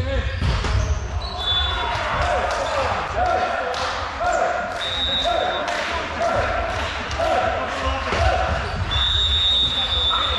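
A ball bouncing repeatedly on a wooden sports-hall floor, about two bounces a second, echoing in the hall under indistinct voices.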